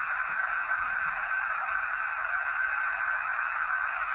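Steady, thin hiss from a handheld voice recorder's small speaker playing back a recording, with no voice in it.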